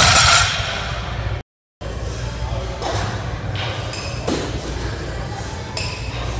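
A loaded barbell with rubber bumper plates set down on the gym floor at the end of a deadlift, a loud clank that rings off briefly. A short dropout follows, then steady gym room noise with a few light metal clinks.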